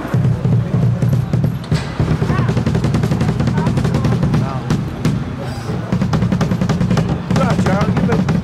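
Drum kit being played fast on stage, rapid drum strokes with a heavy low end running throughout, and voices talking over it.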